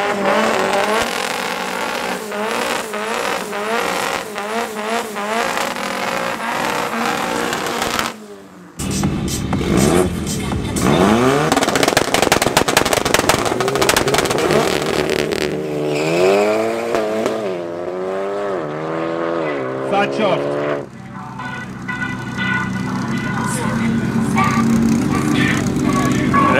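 Drag cars' engines revving hard at the start line, with some tyre squeal in the first part. The revs rise and fall in pulses for about eight seconds, then after a short break sweep up and down several times, and settle to a steadier, lumpy running note for the last few seconds.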